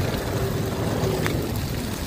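Gas wok burner running with a steady low rumble as fresh vegetables fry in the hot wok, with a metal spatula clinking against the wok about a second in.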